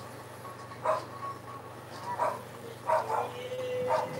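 A dog giving four short barks or yaps about a second apart, with a thin drawn-out whine starting near the end.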